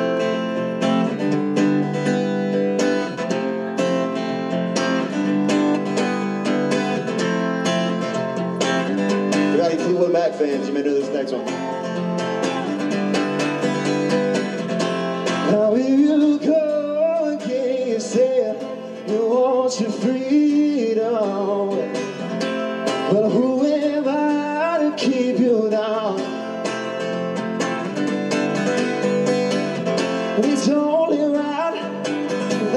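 Acoustic guitar strummed in a steady rhythm, joined about ten seconds in by a man's singing voice: a live solo acoustic performance.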